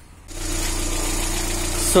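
Opel Zafira B's 1.8 four-cylinder petrol engine idling steadily with a constant tone, starting abruptly about a third of a second in. It is running on its freshly repaired engine control unit.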